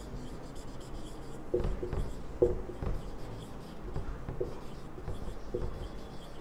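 Felt-tip marker writing on a whiteboard: a soft scratch of the tip across the board, with short squeaks now and then as letters are drawn.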